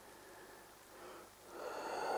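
Faint quiet background, then an audible breath drawn in through the nose or mouth, swelling over the last half second.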